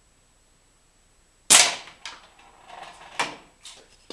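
A single air gun shot at a homemade wooden reactive target: one sharp crack about one and a half seconds in, followed by a few lighter knocks and clatters.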